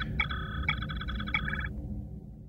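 A synthesized sci-fi electronic sound effect, a chirping warble of several high tones with a few sharp clicks, plays over a low starship engine hum and cuts off shortly before the end.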